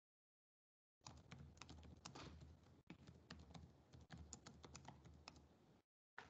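Faint typing on a computer keyboard: a quick, irregular run of key clicks that starts about a second in and stops just before the end.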